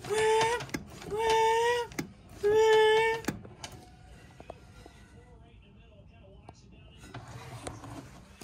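A man's voice sounding three loud, high held notes without words, each about a second long with a slight upward bend, like a wordless sung or crooned phrase; then only faint handling clicks.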